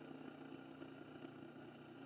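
Near silence with a faint steady low hum from the mains-powered BiTT transformer and rotovertor AC motor rig running on the 60 Hz grid.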